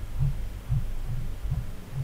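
Low background hum that throbs in soft pulses a few times a second.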